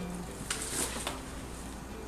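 Paper gift wrapping rustling as it is pulled open, one burst lasting about half a second, starting about half a second in.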